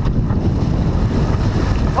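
Wind buffeting the microphone of a camera on a sailboat under way, a steady low rumble, with water rushing along the hull.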